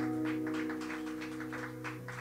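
The last strummed chord of acoustic guitars ringing out and slowly fading, with scattered light claps over it.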